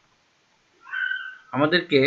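A short, high-pitched cry lasting about half a second, starting about a second in, followed by a man's voice near the end.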